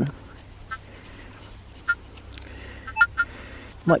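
Quiet open-air background with a steady low rumble and a few short, high bird chirps scattered through it.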